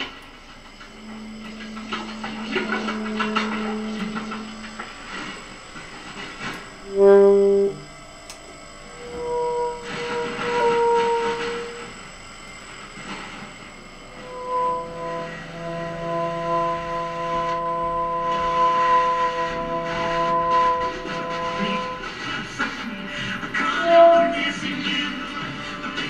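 Free-improvised live music for tenor saxophone and laptop electronics: long held tones overlap, with a short loud blast about seven seconds in. In the second half several steady tones sound together as a sustained, horn-like chord.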